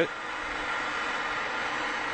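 MAPP gas torch burning with a steady hiss.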